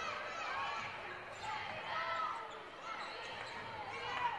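Game-floor sound of women's college basketball: a ball dribbled on the hardwood court and several short high squeaks from sneakers as players cut, under faint voices from the players and crowd.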